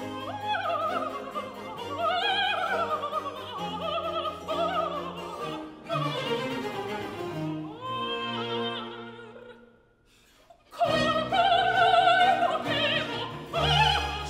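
Operatic soprano singing a baroque aria with wide vibrato, accompanied by a period-instrument string orchestra with bassoon and basses. About ten seconds in, the music dies away into a brief near-silent pause. Voice and orchestra then come back in loudly.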